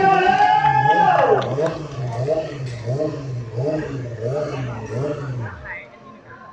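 A motorcycle engine idling, its pitch wavering slightly, then switched off shortly before the end, under people talking and calling out.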